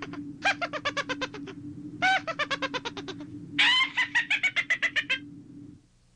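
High-pitched witch's cackle: four bursts of rapid 'heh-heh-heh' notes, each falling a little in pitch, over a steady low tone that cuts off just before the end.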